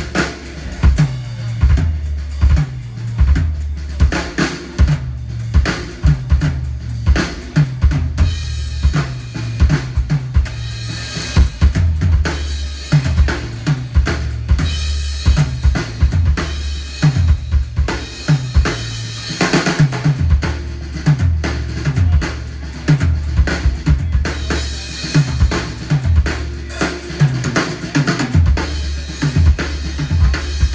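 Rock drum kit played live, with a busy run of kick and snare hits to the fore over a low bass line. The cymbal wash grows heavier from about eight seconds in.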